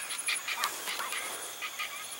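Outdoor evening ambience: insects chirping in a steady, pulsing high trill, with short repeated animal calls that thin out after the first second.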